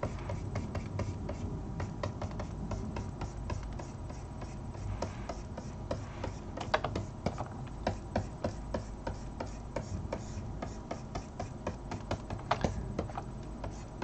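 Light, irregular clicks and taps, several a second, with some rubbing, from hands working a computer's input devices at a desk, over a low steady hum.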